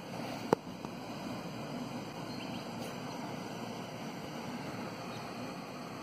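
Steady background noise with no clear pattern, and a single sharp click about half a second in.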